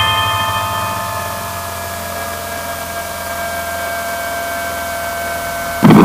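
Steady low drone of a light aircraft's engine heard inside the cockpit, under several sustained ringing tones that fade away, one of them sliding slowly down in pitch. A loud rush of noise comes in just before the end.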